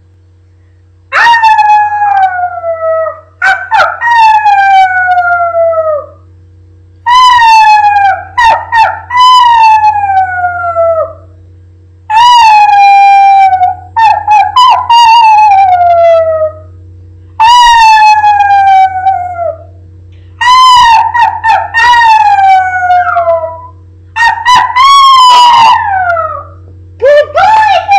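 A woman and a small dog howling together: about nine long howls, each sliding down in pitch, some overlapping, the dog joining in high-pitched after being taught to howl by example.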